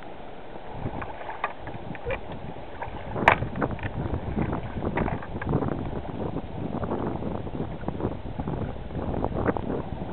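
Choppy water slapping and splashing against a kayak hull, with wind buffeting the microphone, and one sharp knock about three seconds in.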